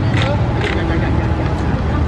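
Street traffic: motorbike and car engines running as they pass, with people's voices in the background.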